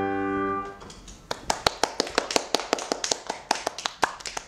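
The final chord of a grand piano piece rings out and fades in the first second. From about a second in, a few people clap irregularly.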